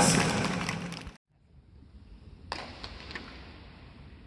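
Ballpark sound: a loud echoing voice cuts off abruptly about a second in, then quiet indoor stadium ambience with one sharp crack about halfway through and a few fainter clicks after it.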